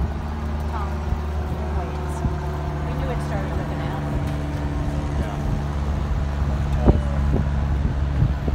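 A steady low motor hum, with people talking in the background and one sharp knock about seven seconds in.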